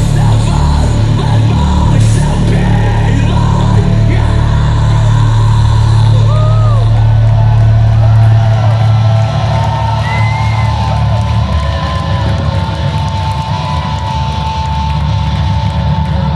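Metalcore band playing live at full volume: a heavy low bass drone holds, then drops away about nine seconds in, leaving a held high synth tone over crowd voices.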